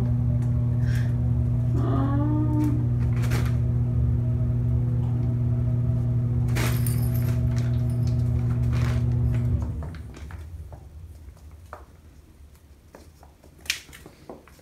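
A steady low electrical hum, as from a fan or appliance motor, that cuts off about ten seconds in. After it stops there are faint light taps and one sharp click near the end.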